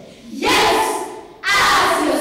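A group of schoolchildren shouting together in unison, twice: one shout about half a second in, and a second starting about a second and a half in.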